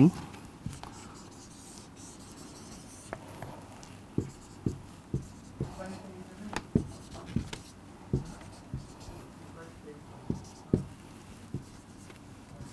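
Marker pen drawing on a whiteboard: a series of short taps and scratches as lines and zigzag resistor symbols are drawn, coming about twice a second in the second half, with a faint squeak now and then.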